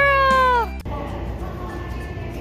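The drawn-out end of a high, sing-song "good girl!" of praise to a dog, falling in pitch and cut off under a second in. Background music over quiet indoor room noise follows.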